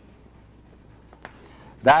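Chalk drawing lines on a chalkboard, faint, with a light tap or two against the board. A man's voice begins near the end.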